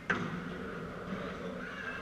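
A padel ball struck once by a paddle just after the start, a sharp crack that echoes briefly around the hall, over the steady background noise of the indoor court.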